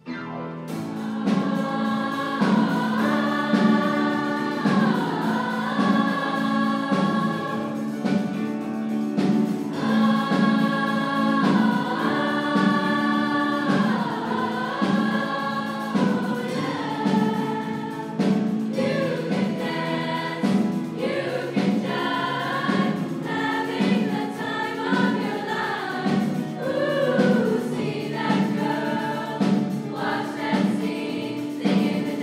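Large female choir singing a lively, upbeat pop song over piano, bass and drum accompaniment with a steady beat. The music starts suddenly out of silence at the very beginning.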